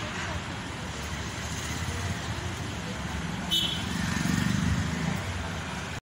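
Outdoor street ambience: a steady background of traffic noise with faint voices, a low rumble swelling a little past the middle, and one short high squeak about three and a half seconds in.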